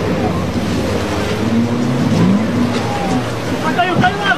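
Twin outboard motors on a center-console boat running hard through choppy water, the engine note rising about halfway through, over the steady rush of water and spray.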